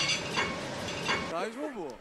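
Food sizzling in a frying pan as it is stirred, a steady dense hiss that stops suddenly just past halfway; a voice follows.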